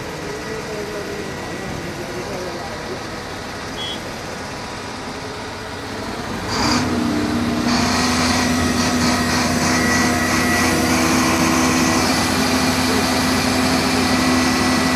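Heavy diesel engine of construction machinery idling, then speeding up at about six and a half seconds and running steadily at higher revs.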